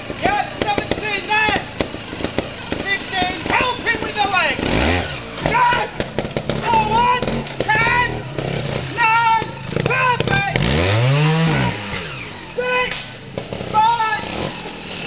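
Trials motorcycle engine blipped as the rider works over rocks, revving up and dropping back twice, a short burst about five seconds in and a longer rise and fall near the end, with people talking close by throughout.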